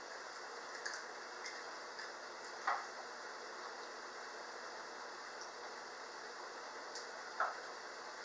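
Quiet room hiss with a few faint clicks and small soft knocks from children eating at a table. The two clearest knocks come a little under three seconds in and near the end.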